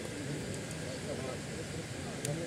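Indistinct chatter of several voices talking at once, no single speaker clear, over a steady background hiss.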